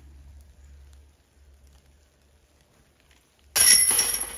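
A thrown disc golf disc strikes the chains of a metal disc golf basket near the end, a sudden loud clash followed by ringing, jingling chains.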